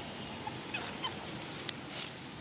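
A young macaque's short high-pitched squeaks, three or four brief calls in quick succession.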